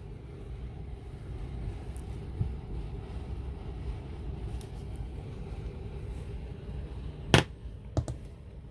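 Handling noise of a pistol being moved about: a steady low hum with a faint click about two seconds in and one sharp knock near the end.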